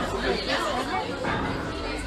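Chatter of several people talking at tables, voices overlapping.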